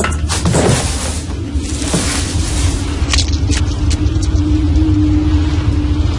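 Horror-film soundtrack: a score with a deep steady rumble and a long held tone, with noisy swooshes and a few sharp clicks over it.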